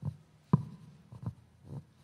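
Microphone being handled and adjusted: a few dull knocks and bumps, the loudest about half a second in, followed by a brief ringing tone.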